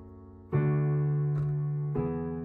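Piano chords played on a keyboard, each struck and left to ring: an F-sharp minor chord fading away, a new chord struck about half a second in, and the next struck at the very end.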